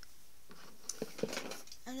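Small hard plastic doll-accessory pieces clicking and clattering as they are handled, with a few sharp clicks about a second in.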